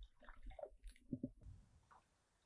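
Faint, muffled water sloshing and gurgling heard from underwater, as a released walleye swims away.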